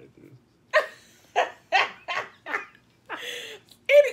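Hearty laughter: five short, loud bursts about half a second apart, then a longer breathy one about three seconds in.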